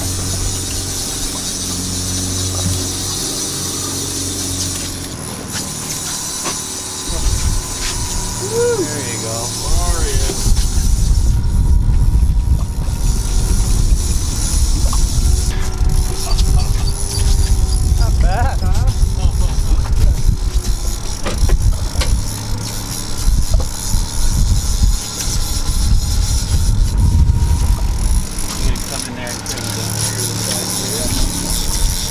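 Outboard motor running on a fishing boat with a steady low hum. From about ten seconds in, a heavy irregular rumble of wind buffeting the microphone takes over. A couple of brief squeaks come at around eight and eighteen seconds.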